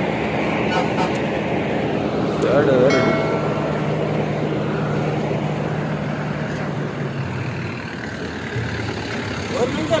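Diesel engine of a heavily loaded multi-axle lorry running with a steady low drone, its note dropping lower about seven or eight seconds in. A short horn toot sounds about three seconds in.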